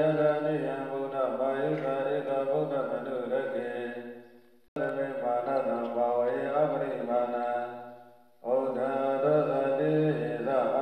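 Buddhist chanting: a sustained, melodic recitation that twice fades down and then comes back abruptly, about halfway through and again near the end.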